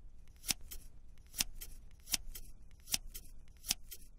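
A pair of scissors snipping through paper: five sharp cuts, about one every 0.8 s, with faint clicks and paper rustle between them.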